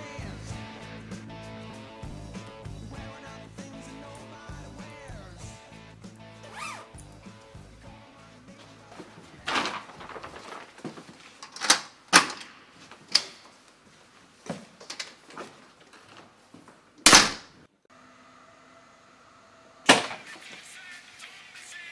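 Music with a steady bass line that stops about halfway, then a run of knocks and thumps in a hallway, ending in one loud bang near the end like a front door being shut.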